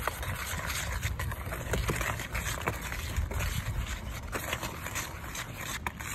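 Wire whisk stirring dry baking soda and cornstarch in a plastic bowl: a steady, soft scratchy swishing with a few light taps of the wires against the bowl, over a low rumble.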